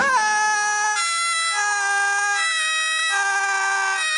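A cartoon character's long, unbroken high-pitched scream, its pitch jumping between a few held notes like a wail.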